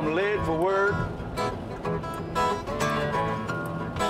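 Acoustic guitar playing a blues accompaniment between sung lines, with the last sung note of a line bending and trailing off in the first second.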